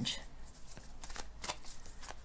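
A deck of tarot cards being shuffled by hand: a run of soft, irregular card clicks and slaps.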